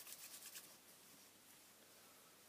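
Near silence, with faint, rapid rubbing of hands against each other in the first half-second, then only room tone.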